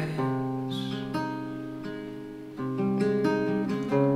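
Steel-string acoustic guitar with a capo, chords struck and left to ring. A new chord comes about a second in; it fades until a louder chord about two and a half seconds in.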